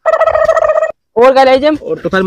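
A warbling, rapidly fluttering call held on one pitch for just under a second, then after a brief pause a voice with rising and falling pitch.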